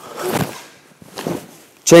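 Two brief rustling movement sounds, about a second apart, from two karateka in cotton gis moving through a partner drill on foam mats.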